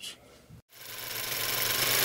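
A small machine clattering rapidly and evenly. It fades in after a moment of near silence and swells to a steady, loud rattle.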